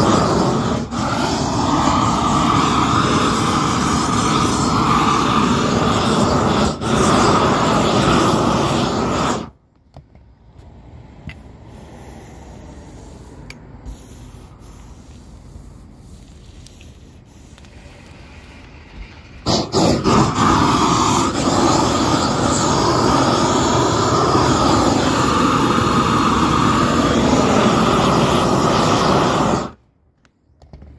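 Propane roofing torch burning with a loud, steady rush as it heats the seam of a torch-on bitumen cap sheet. The rush stops abruptly about a third of the way in, leaving a much quieter stretch with a few faint clicks, then returns at full strength about two-thirds in and cuts off sharply at the end.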